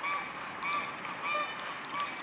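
Mute swans giving four short honk-like calls, about two-thirds of a second apart.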